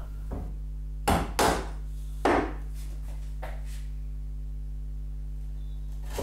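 A wood chisel struck with a mallet, chopping out the waste between finger-joint fingers from the second face of the board. There are about five sharp knocks in the first three and a half seconds, the two loudest close together about a second in, over a steady low electrical hum.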